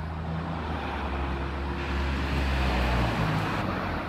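Low, steady rumble of a vehicle engine running nearby, a little louder in the middle and easing off near the end.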